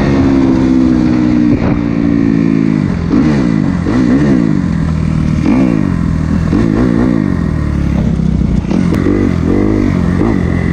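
Kawasaki four-stroke dirt bike engine heard from the rider's position. It holds a steady cruising note for about three seconds, then revs up and down repeatedly as the throttle is worked.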